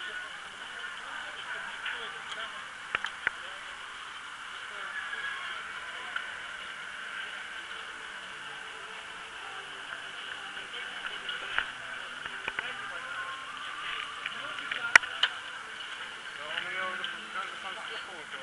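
Indistinct chatter from a group of cyclists gathered nearby, with no clear words. A few sharp clicks cut through it, the loudest about fifteen seconds in.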